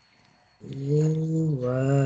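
A voice reciting Quranic Arabic in chanted tajweed style, drawing a long vowel out on a steady pitch; it begins about half a second in after near silence and steps down in pitch partway through.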